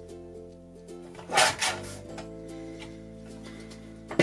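A paper trimmer's sliding blade drawn once across a sheet of paper, one short cutting swish about a second and a half in, over steady background music.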